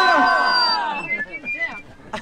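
A man's loud, drawn-out shout through a PA loudspeaker, held on one pitch, then falling away and fading about half a second in, followed by quieter scattered voice sounds.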